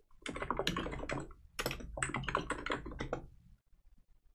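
Typing on a computer keyboard: a quick run of keystrokes, a brief pause about a second and a half in, then a second run that stops a little after three seconds.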